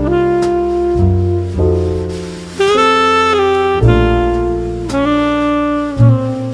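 Jazz instrumental with a saxophone playing long held notes over a bass line.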